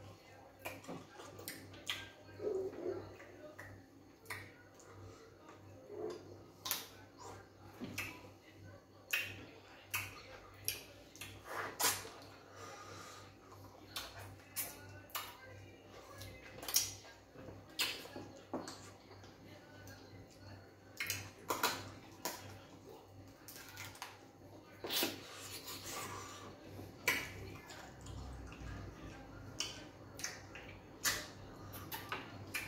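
Eating sounds: irregular wet chewing, lip smacks and mouth clicks from two people eating fufu and slimy ogbono soup by hand.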